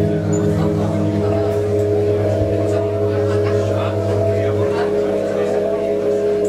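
Sustained droning chord held on a keyboard synthesizer during a live indie rock set; its lowest notes drop out about two-thirds of the way through. Voices talk underneath.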